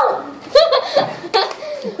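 People laughing in short bursts, with a shout of "No!" in the middle.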